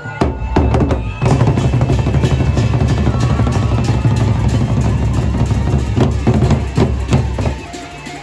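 Gendang beleq, the large double-headed barrel drums of Lombok's Sasak people, are played by a group. A few separate strokes come in the first second, then loud, continuous massed drumming runs until it stops shortly before the end.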